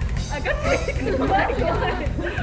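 Several voices talking over each other, excited chatter, with a steady low rumble underneath.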